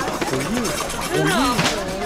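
Only speech: people talking.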